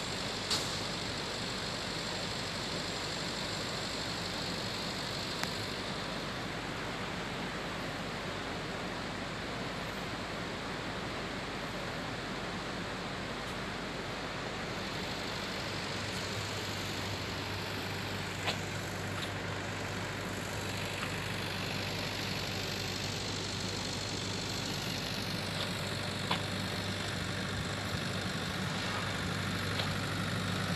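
Steady rush of a muddy, flood-swollen river, joined about halfway through by the low, steady hum of an excavator's diesel engine idling.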